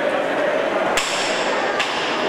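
A sharp, hard knock about a second in with a brief ring after it, then a fainter knock near the end, over steady hall noise.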